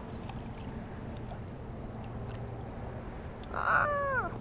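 Steady wind and water noise around a wading angler, with a few faint clicks. Near the end comes a short, loud cry that falls in pitch.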